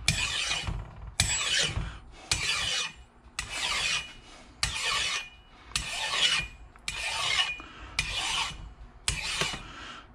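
Flat file rasping across the face of a differential ring gear in long even strokes, about one a second, to take off burrs and high spots before the gear is fitted to the carrier.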